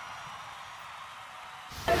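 The ring-out of a logo sound effect, slowly fading. A quick whoosh near the end accompanies the logo transition.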